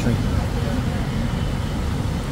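Steady low rumble of engines, with no sudden sounds.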